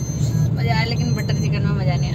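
Car engine and road noise heard from inside the cabin while driving, a steady low drone, with a quiet voice speaking over it from about half a second in.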